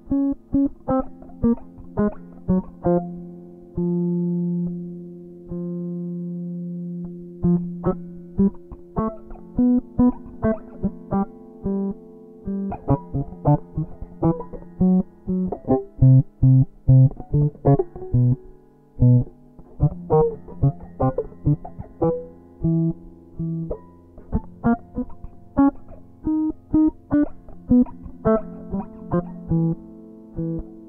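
Semi-acoustic hollow-body electric guitar played fingerstyle and picked up directly through a wireless transmitter, with no microphone. It plays short plucked single notes in chromatic lines running up and down, with two longer held notes about four to seven seconds in.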